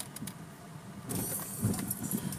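Quiet car-cabin sound: a faint steady low hum with scattered light clicks, and a rustle of the handheld recording device being moved from about a second in.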